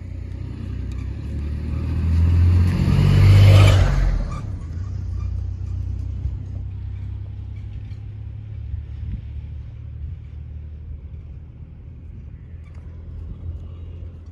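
A motor vehicle passing close by: its rumble builds to a loud peak about three and a half seconds in and fades away, leaving a steady low rumble.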